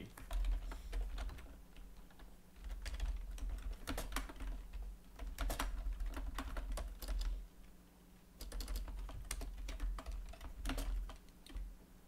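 Typing on a computer keyboard: quick runs of keystrokes broken by short pauses, with a quieter gap about two-thirds of the way through.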